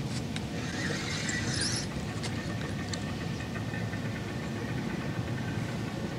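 A feeder rod being cast: the line hisses off the spinning reel's spool for about a second and a half, over a steady low background rumble.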